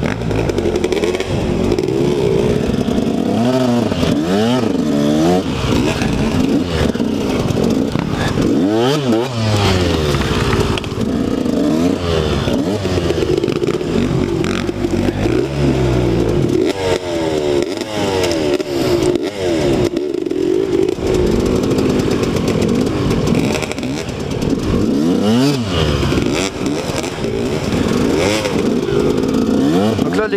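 A KTM 125 SX two-stroke single-cylinder dirt bike engine under the rider's throttle, its revs rising and falling over and over in quick blips while riding slowly over rough ground.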